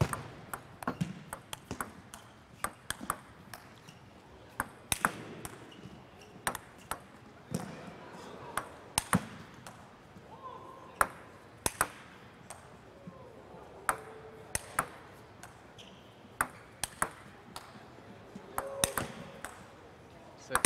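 Table tennis rally: the plastic ball clicking off the bats and bouncing on the table, a sharp tick every half second to a second, in a long attack-against-defence exchange.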